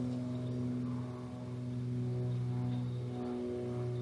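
A steady low hum with several higher overtones, unchanging throughout: the background hum carried by an old tape recording of a talk.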